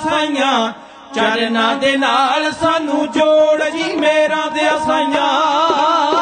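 Male voices of a dhadi group singing a Punjabi devotional song in unison, with bowed sarangi accompaniment. There is a brief break about a second in.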